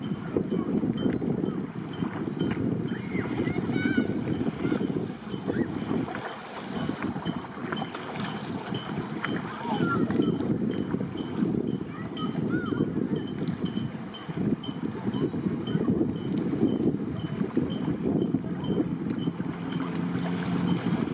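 Wind buffeting the microphone in uneven gusts, with a faint regular ticking about twice a second and a few short faint chirps over it.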